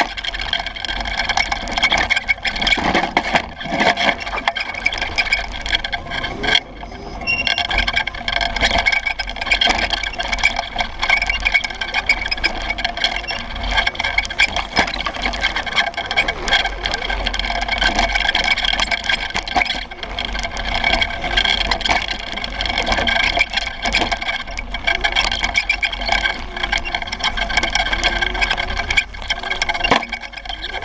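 Small off-road vehicle driving fast over dirt, its fat tyre and frame heard up close with a steady high whine over the rush of tyre and wind noise. The sound eases briefly about six to seven seconds in.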